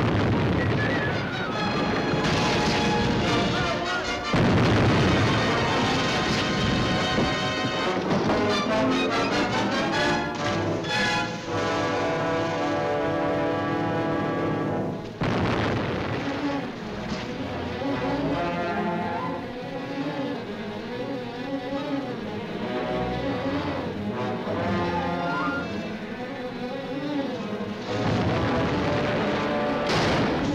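Orchestral film score, with ship's cannon shots booming at the start and a few more times through it.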